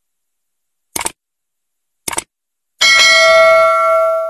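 Like-and-subscribe button sound effect: two mouse clicks about a second apart, then a bright bell ding for the notification bell that rings on and fades out.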